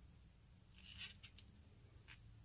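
Near silence, with a few faint soft clicks and rustles of circular knitting needles and yarn as stitches are worked, clustered around a second in.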